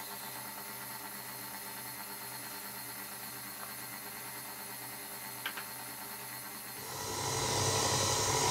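KitchenAid Artisan stand mixer running steadily, its motor humming as it mixes flour, oil and warm water into dough. About seven seconds in the sound grows louder and rougher.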